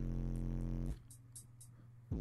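Car-audio subwoofer system sounding a steady low drone with overtones, which cuts off suddenly about a second in. It is followed by near silence with a few faint clicks as the amplifier's wiring is handled.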